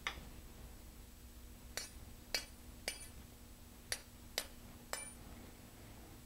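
Seven light metallic clicks, each with a brief high ring, irregularly spaced and the first the loudest, from a three-piece metal model-rocket launch rod being worked at a roll-pin joint as its second section is fitted on.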